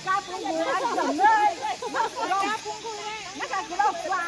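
Several women's voices talking and calling out over one another in lively outdoor chatter.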